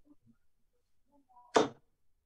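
Darts striking a bristle dartboard. It is mostly quiet, with one short, sharp thud about one and a half seconds in.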